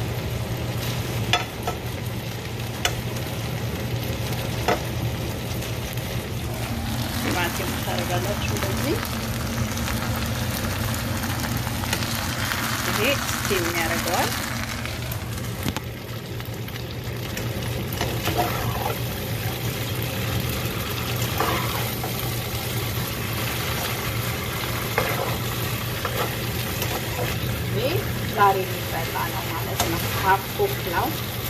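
Vegetables sizzling as they fry in a pan on a gas stove, with a utensil stirring them and now and then clicking against the pan. A steady low hum runs underneath.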